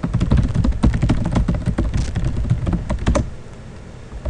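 Fast typing on a computer keyboard: a quick run of keystroke clicks for about three seconds, then it stops.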